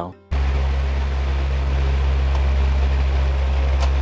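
Room fan blowing into the microphone: a steady low rumble with a rushing hiss that starts abruptly a moment in, with a faint hum under it. A light click near the end.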